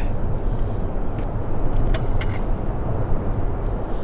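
Steady low rumbling outdoor noise, with a few faint clicks in the middle.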